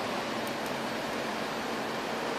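Steady hiss of background room noise, even and unchanging, with no distinct events.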